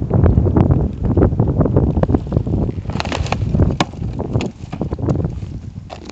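Wind rumbling on the phone's microphone, strongest in the first few seconds, with sharp crackles and snaps of dry scrub stems brushing and breaking against the phone as it is pushed through the bushes.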